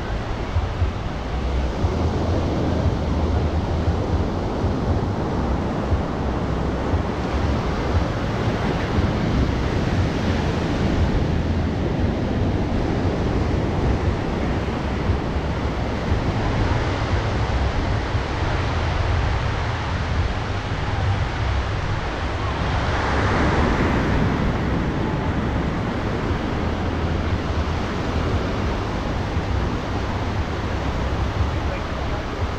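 Surf breaking and washing up a sandy beach, a steady rush of waves, with one wave swelling louder about three-quarters of the way through. Wind buffets the microphone with a low rumble.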